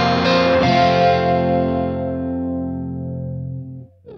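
Closing chord of a rock song: a guitar chord is struck about a second in and left to ring, fading steadily, then cuts off just before the end.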